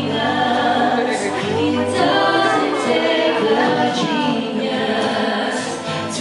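A man and a woman singing a love-song duet into microphones, their sung lines gliding and overlapping, with steady musical accompaniment underneath.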